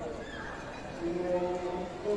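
People's voices, with one voice holding a single steady call about a second in.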